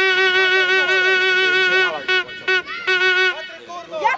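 A horn sounding one long, loud, steady note of nearly three seconds, then three short toots at the same pitch.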